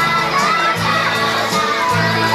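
Many young children's voices shouting and chattering over dance music with a stepping bass line.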